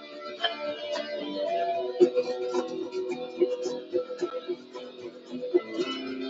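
Guitar playing: held notes for the first two seconds, then a run of separate plucked notes.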